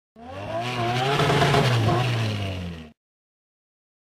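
An engine revving briefly, rising and falling slightly in pitch. It fades in and fades out, then cuts to dead silence just under three seconds in.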